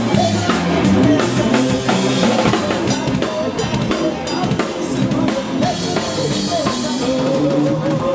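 Drum kit played with sticks in a live band, with snare, bass drum and cymbal strokes over electric guitars and other pitched instruments playing steadily.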